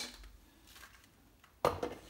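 Hard plastic knock of a Motorola 8500X brick phone being set down into its plastic charging base, one sharp clack about one and a half seconds in with a couple of small rattles after it.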